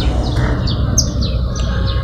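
A small bird chirping a quick run of short, falling high notes, several a second, over a steady low rumble.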